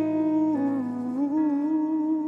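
Closing bars of a pop ballad: a singer hums a wordless held melody over soft instrumental accompaniment, the note dipping and rising again about half a second in.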